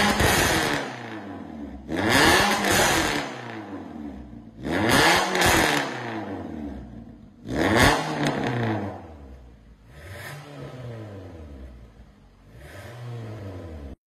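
Toyota Vios 1.5-litre four-cylinder engine free-revving in short blips through a stainless steel 4-1 extractor and valved catback exhaust, each rev rising and falling in pitch. Four loud revs come a few seconds apart with the exhaust valve open, then two quieter revs near the end after the valve is switched closed by remote.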